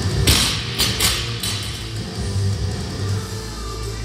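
A loaded barbell with bumper plates dropped onto a rubber gym floor: one hard impact about a third of a second in, then a few smaller bounces over the next second. Music plays throughout.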